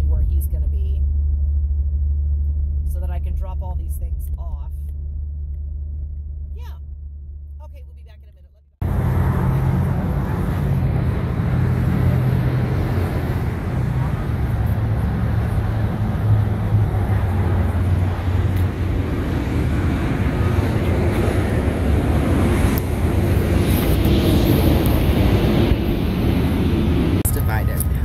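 Steady low rumble inside a moving car's cabin that fades away over the first several seconds. It then cuts abruptly to loud outdoor noise: wind buffeting the microphone over traffic in a parking lot.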